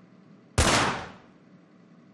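A single loud gunshot, about half a second in, sharp at the start and dying away over about half a second.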